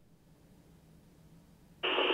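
Near silence between radio transmissions; near the end the received FM audio of the ICOM IC-705 opens suddenly with a steady hiss as the next transmission begins.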